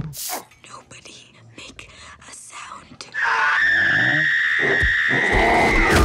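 Trailer sound mix: soft breathy rustles and clicks, then, about three seconds in, a sudden loud, high, held scream-like tone. A deep rumble joins it near the end.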